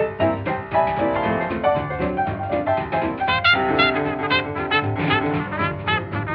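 Old, narrow-sounding swing jazz record: a small band with piano and rhythm, with brass (trumpet and trombone) coming in about halfway through.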